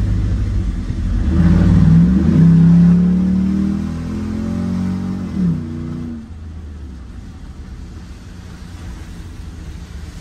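Pickup truck engine accelerating, heard from inside the cab, with a loud exhaust that the owner takes for the manifold-to-pipe joint having come apart again. The pitch climbs over a second or so, holds, then drops off about five seconds in, settling to a quieter steady rumble.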